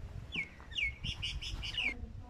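A bird calling in a quick string of short, high notes, several of them sliding sharply down in pitch, starting about a third of a second in and running to near the end.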